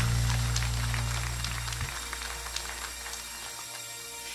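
A live worship band's final chord ringing out and fading after the singing stops: a deep held bass note cuts away about two seconds in, leaving a soft sustained keyboard chord that lingers quietly.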